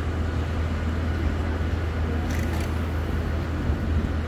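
Steady low drone of a working crane's engine, running evenly with no change in pitch.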